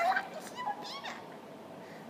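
A young woman's high-pitched squealing exclamation, 'so cute', her voice sliding up and down in pitch, with a short rising squeak about a second in.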